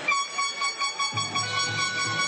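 Basketball arena buzzer sounding one steady, sustained tone that starts suddenly. About a second in, a low pulsing music beat joins it, about three beats a second.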